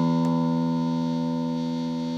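Epiphone Les Paul electric guitar's low E string sounding one sustained note that slowly fades, as it is tuned to E for an intonation check.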